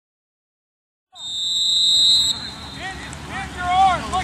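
A single shrill whistle blast, steady and about a second long, that starts after a moment of silence and cuts off sharply. Voices calling out follow.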